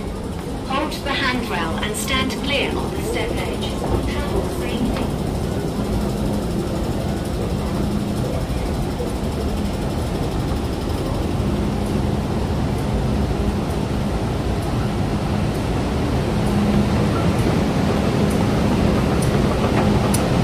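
Underground metro station noise: a steady low rumble with a faint hum from escalators and machinery. Voices can be heard in the first few seconds, and the noise grows a little louder near the end as the platform comes near.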